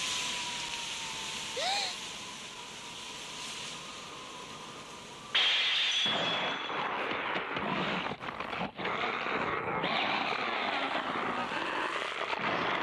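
Animated sound effects: a steady wind-like hiss with one brief rising chirp. About five seconds in, a sudden loud rushing, crackling noise sets in and runs on with many sharp crackles as tentacles burst out of a man's back.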